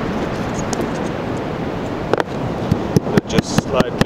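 Steady surf and wind noise on an open beach. A couple of sharp knocks come about two seconds in, then a quick run of taps and clicks near the end, from bait being handled on a cutting board.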